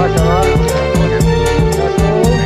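Background music with a steady beat, a deep bass line and a gliding melody.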